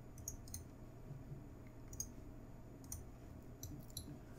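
A dozen or so faint, irregularly spaced clicks of a computer mouse being worked, over a steady low hum.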